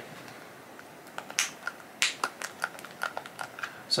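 Plastic pump dispenser on a skincare cream bottle clicking as it is pressed to dispense cream into a palm: a string of small sharp clicks, the loudest two about a second and two seconds in.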